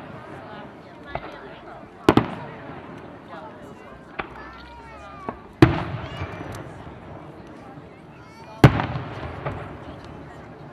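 Aerial firework shells bursting overhead: three loud booms about three seconds apart, roughly two, five and a half and eight and a half seconds in, each trailing off, with smaller pops between them.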